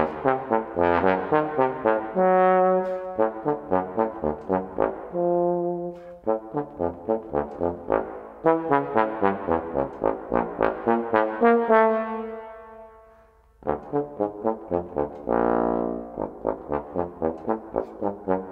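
S.E. Shires Lone Star bass trombone playing a brisk etude line of short, crisply separated notes, broken by a few held notes. A long note about two-thirds through dies away almost to silence before the quick notes start again.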